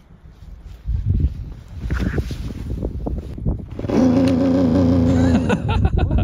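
Two-stroke snowmobile engine revving in uneven surges, then held at a steady high rev for about a second and a half before dropping off shortly before the end. The sled is stuck in deep snow with its clutch side panel hung up on a tree.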